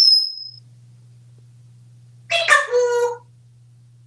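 African grey parrot giving a loud, short high whistle that falls slightly, then about two seconds later a longer, lower call with a wavering pitch lasting about a second.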